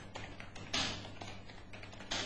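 Computer keyboard being typed on: a quick, irregular run of soft key clicks, about a dozen keystrokes.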